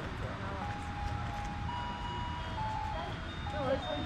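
A simple electronic tune of single plain notes stepping up and down in pitch, like a music-box or chime melody from a Christmas light display, over a low rumble; voices talk in the background, most clearly near the end.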